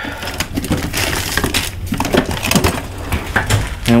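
Irregular clicks, knocks and rustling from objects being handled and set down, such as plastic parts and tools being moved about.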